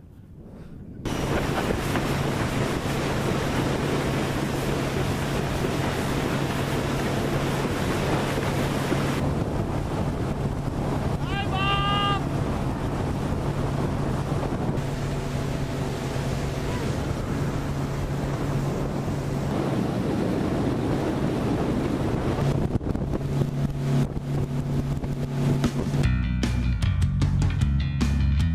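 Outboard motor running at speed, a steady low hum under the rush of wind on the microphone and water off the hull. A short high call cuts through about halfway through.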